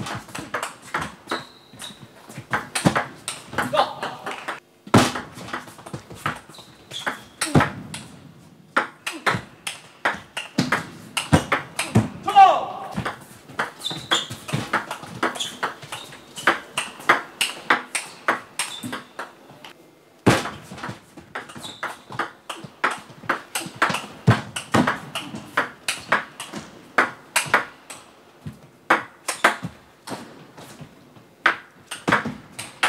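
Table tennis rallies: the ball clicking sharply off the players' bats and bouncing on the table in quick, irregular exchanges, with short breaks between points.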